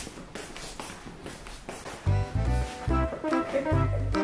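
A few soft knocks over quiet room noise, then background music with a heavy bass beat starts about halfway through.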